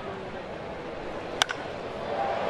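Crack of a wooden baseball bat meeting a pitched ball: one sharp crack with a short ring, about a second and a half in. Under it is the steady murmur of a ballpark crowd.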